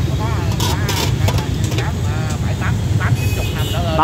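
Voices talking over a steady low rumble of street traffic.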